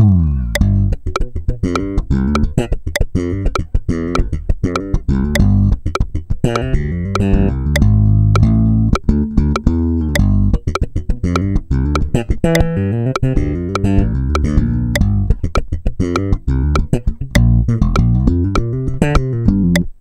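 Electric bass guitar played slap style, with thumb slaps, popped strings and hammer-ons, working through a busy funk bass line at a slowed practice tempo. A steady metronome click runs under it, about one and a half clicks a second.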